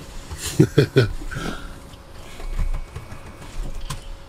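A short wordless voice sound about half a second in, followed by faint handling noises as a test probe is worked into the back of a wiring connector, with a sharp click near the end.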